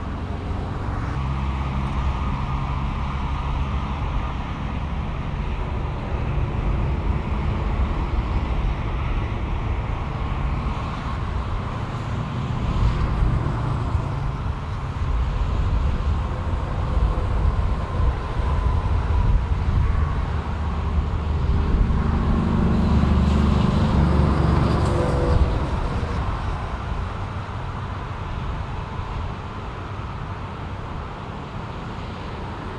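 Road traffic with heavy vehicle engines running steadily, the low engine rumble growing louder a little past halfway, then easing off near the end.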